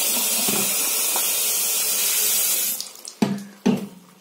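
Bathroom sink tap running, its stream splashing over a plastic shampoo bottle held under it to rinse off foam. The flow stops abruptly about three seconds in.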